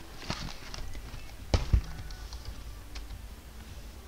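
A cardboard box of trading cards being handled and set down on a table: a few light knocks, then two solid thumps close together about a second and a half in.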